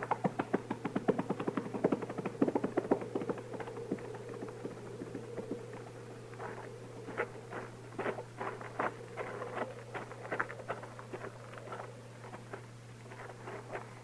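Horses' hoofbeats as a radio-drama sound effect: riders galloping off in a fast, even clatter that thins out after about four seconds, followed by a second run of slower, spaced strikes.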